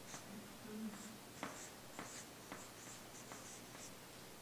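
Marker writing on a flip-chart pad: faint, short, squeaky strokes and light taps of the pen on the paper, coming in quick bursts as words are written. A brief low sound comes in under the writing about a second in.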